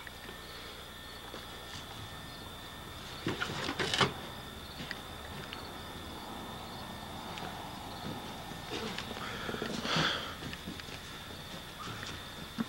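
Faint outdoor background with a thin steady high-pitched tone, broken by a brief sharp rustle or knock about four seconds in and a softer one near the end.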